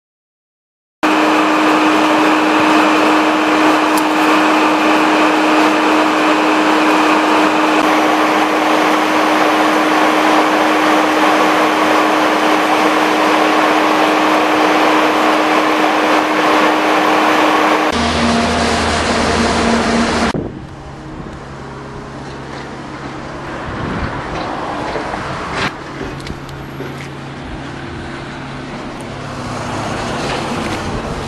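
Steady roar of a jet airliner's cabin in flight, with one constant low hum under it, starting about a second in. Near the end it cuts to a quieter road-vehicle sound with a low hum and a few sharp clicks.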